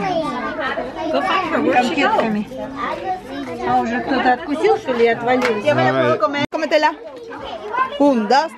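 Speech only: several voices talking over one another, children's voices among them. A brief dropout comes about six and a half seconds in.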